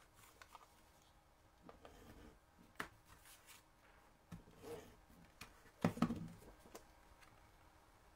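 Pieces of card stock being handled and laid together on a work mat: faint, scattered rustles and light taps, the loudest a short cluster about six seconds in.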